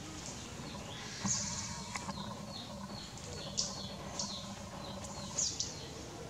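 Wild birds chirping in short, quick falling calls, several loud ones standing out. A steady low hum comes in about a second in and stays under them.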